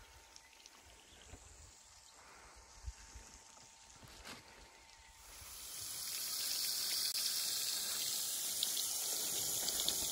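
Faint outdoor background at first. About halfway through, a steady hiss of water jetting from a black plastic irrigation pipe fades in and holds.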